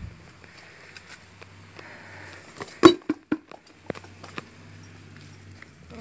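A steel lawn tractor wheel being slid off a transaxle axle and set down on concrete: one sharp knock a little under halfway through, then a few lighter knocks.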